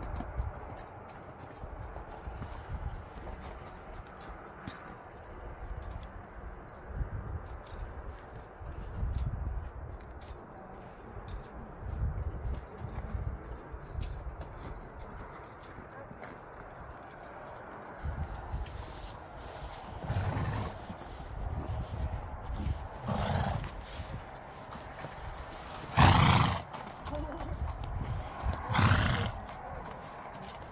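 A horse walking on snow-covered ground, its hoofsteps soft and irregular. Several short, loud, noisy bursts come in the second half, the loudest a few seconds before the end.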